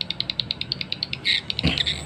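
Recorded edible-nest swiftlet call sound played through small tweeters: a rapid train of high clicks, about ten a second, with a few short chirps mixed in. It is a lure call used to draw swiftlets into a bird house.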